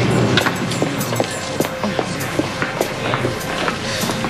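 Footsteps and knocks of a group of people moving about on a hard floor, many irregular taps over a steady low hubbub of a crowd.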